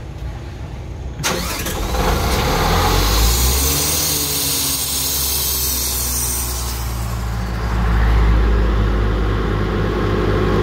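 Airman portable air compressor's diesel engine starting about a second in and settling into a steady run, getting a little louder from about eight seconds in. It is being run to test its engine speed after the speed adjuster was turned two turns to clear a low engine RPM fault.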